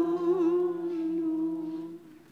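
Unaccompanied sung hymn or chant: voices hold a long closing note, with a slight waver, that breaks off about two seconds in.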